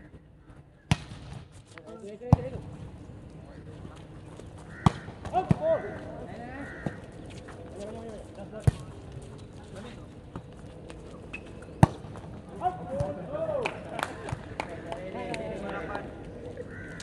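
Volleyball being played: a series of sharp slaps as the ball is hit, spread across the rally, with players' shouted calls in between.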